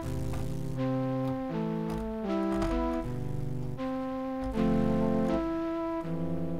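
Synthesized flute-like melody from an FL Studio Sytrus flute preset. Held notes, several sounding together, change about once every three-quarters of a second over a low bass.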